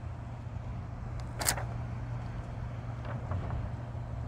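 Quiet outdoor background: a steady low rumble, with a short paper rustle about one and a half seconds in as a picture card is handled.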